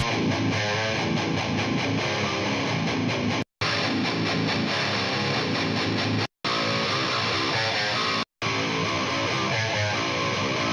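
Electric guitar riff recorded through a miked guitar amp cabinet, played back on its own without the drums and bass. Playback cuts out briefly three times.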